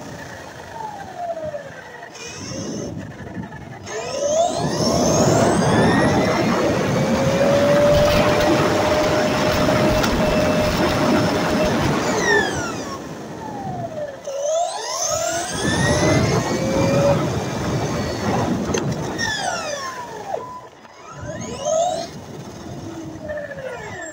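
Onboard sound of a Kyosho Fazer Mk2 electric RC touring car driving on asphalt: its motor and gears whine, rising and falling in pitch as it speeds up and slows down again and again, over a steady rush of tyre and road noise. It is loudest in the first half, easing off twice later as the car slows.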